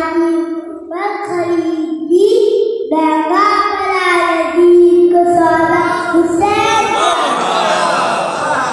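A young boy singing an Urdu devotional poem into a microphone, alone and unaccompanied, in long held notes. Near the end other voices rise over him.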